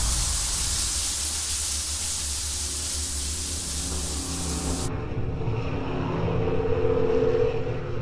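Shower running: a steady hiss of water spray that cuts off abruptly about five seconds in, leaving a low hum with a faint held tone.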